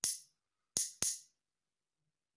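Two metal spoons struck together to tap out a rhythm pattern, giving bright metallic clinks: one strike, then two quick strikes close together about three-quarters of a second later.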